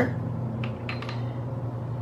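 Steady low background hum, with two faint light ticks a little past the middle.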